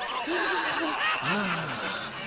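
Cartoon character voices snickering and chuckling in short rising-and-falling bursts, the longest about one and a half seconds in.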